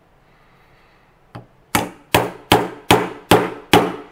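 A plastic hammer striking the bullet seater of a Lee Loader die to seat a bullet into a cartridge case. One light tap comes a little over a second in, then six sharp, evenly spaced blows at about two and a half a second.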